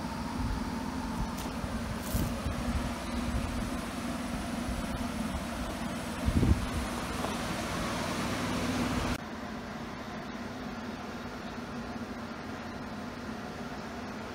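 A 'Baby Godzilla' diesel foundry burner running with a steady rushing noise and a low hum, with a single knock about six and a half seconds in. About nine seconds in, the sound drops abruptly to a quieter steady hiss.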